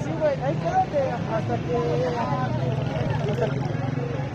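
Voices talking over a steady low engine hum from a vehicle running in the street.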